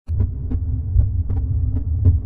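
Low, uneven rumble of an idling car engine, with faint irregular ticks over it.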